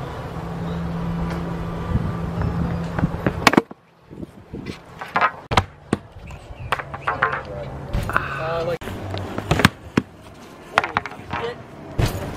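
A vaulting pole's tip knocking sharply as it is planted into an uncushioned vault box, a few separate knocks, the first about three and a half seconds in, with voices in the background and a steady low hum at the start.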